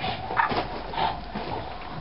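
A small dog making a few short vocal sounds, clustered around half a second and one second in.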